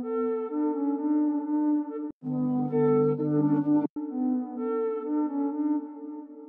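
A synthesizer lead from a Vital preset plays a melody of soft, held notes with reverb and delay. The sound cuts out sharply twice, about two and four seconds in, and between the cuts it is fuller, with a deeper low end.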